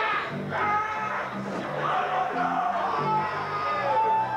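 Rock band playing live: a bass line moves in short stepping notes under held higher tones from keyboard and guitar.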